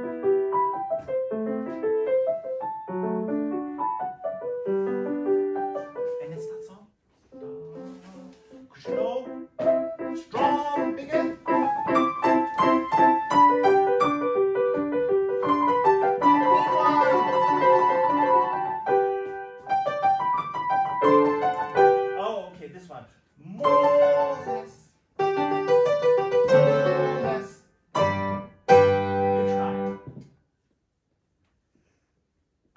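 Grand piano playing a light, classical-style piece, the melody passing back and forth between the right and left hands. It breaks off briefly a few times, once about 7 seconds in and several times near the end, before going on.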